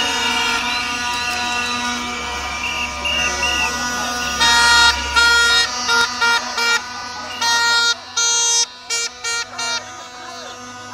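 Marching protest crowd, with a horn sounding a series of blasts, some long and some short, starting a little under halfway through.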